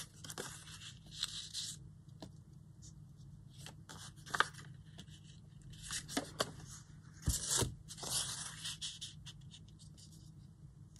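Paper scraps torn by hand and handled, tearing and rustling in several short spells, with a few light knocks on the cutting mat.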